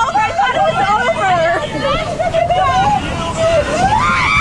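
Several raft riders screaming and shouting over one another, with no clear words, over a steady rushing rumble of the ride.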